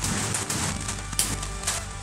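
Steady rain on the roof, an even hiss, with a few short sharp clicks around the middle.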